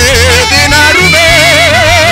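Live gospel praise music: a singer holds a long note with wide vibrato over a steady bass line.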